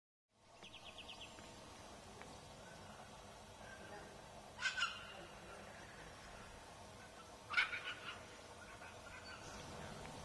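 Birds calling outdoors: a brief rapid trill near the start, then two short loud calls about three seconds apart over a faint background.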